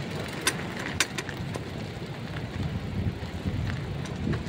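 Steady low outdoor rumble, with a few short sharp clicks about half a second and a second in.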